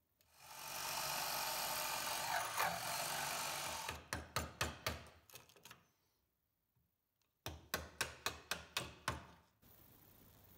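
A power tool runs steadily for about three and a half seconds, boring out waste from a lock mortise in an oak door edge. It stops, and then come two runs of quick sharp taps, a hammer driving a chisel to clear the waste, with a short pause between the runs.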